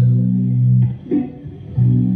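Electric guitar playing a held chord at the start and another near the end, with a short quieter gap between. This is the accompaniment of a live street performance.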